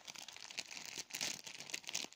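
Plastic packet holding a twisted foil garland crinkling as it is handled, a run of irregular crackles.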